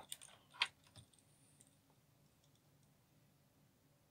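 A few light clicks in the first second, the loudest just over half a second in, as a Hornby model locomotive is picked up and handled on the workbench.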